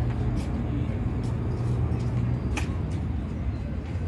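A steady low mechanical hum that holds unchanged throughout, with a few faint clicks, the clearest a little past halfway.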